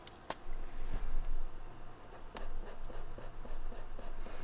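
Hands handling brush markers at a desk: a sharp click shortly after the start, then a soft thump and light rustling and tapping as the next marker is taken up and uncapped.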